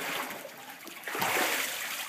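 Baptistery water splashing as a person is fully immersed and brought back up, with a louder splash about a second in.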